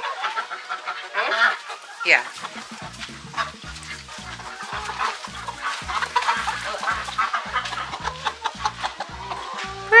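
Hens clucking and squawking in alarm as one is chased and caught by hand, with wing flapping. Background music with a steady beat comes in about three seconds in.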